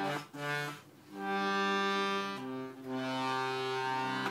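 Piano accordion playing sustained chords: a short chord at the start, a brief break about a second in, then long held chords that change partway through.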